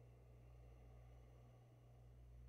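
Near silence: room tone with a steady low hum.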